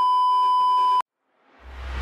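A steady, high electronic bleep tone held for about a second and cut off suddenly. After a moment of dead silence, a rising noise swell with a low hum begins near the end, leading into music.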